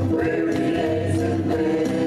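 Live gospel song: several men's and women's voices singing together through microphones, over strummed acoustic guitar and electric guitar.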